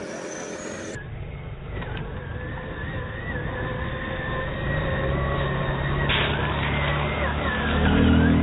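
Traxxas RC monster truck running on a 4S battery, its electric motor giving a thin whine that wavers with the throttle as it drives over loose gravel. The sound grows louder as the truck approaches, with a short hiss about six seconds in and a low hum building in the second half.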